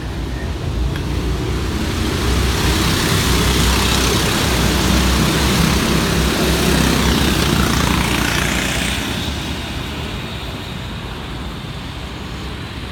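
Go-kart engines on a track, a rushing, rumbling vehicle noise that swells to a peak in the middle and then fades away with a falling pitch, as karts pass by.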